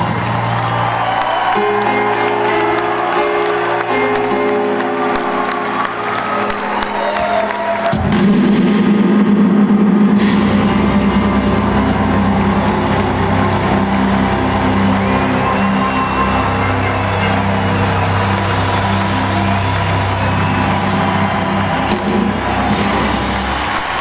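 Live electric rock band playing the close of a song: held chords with guitar lines gliding over them. About eight seconds in, a final chord is struck and left ringing to the end, with some crowd cheering.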